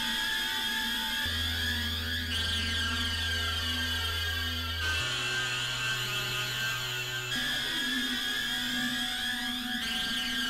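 Novation Supernova II synthesizer playing dense, sustained drone tones processed with effects, with many steady high tones layered together. A low bass note comes in about a second in and steps up in pitch twice, and a slow rising glide sweeps through the high tones near the end.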